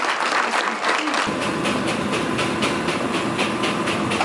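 Audience clapping, a dense run of quick claps. About a second in, a low steady rumble joins underneath.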